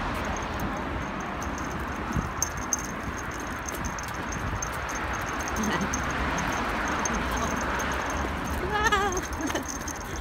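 Steady outdoor background noise with a low rumble, a few light clicks about two seconds in, and one short wavering call near the end.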